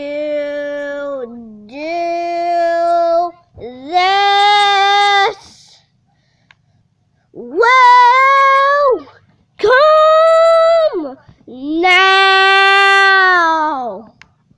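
A child singing a run of six long, drawn-out notes, each held for one to two seconds with short breaks between, the pitch rising over the first few and dropping for the last.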